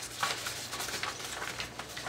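Sheets of scrapbook paper rustling as they are slid by hand across a cutting mat, with a few short handling scrapes near the start.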